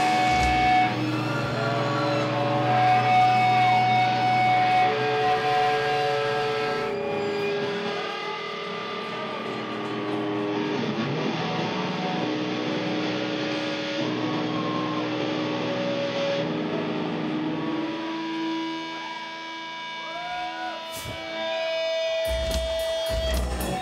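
Live doom metal: electric guitar and bass hold long, droning notes that ring and waver in pitch, with no drums behind them. Drum hits come back in near the end.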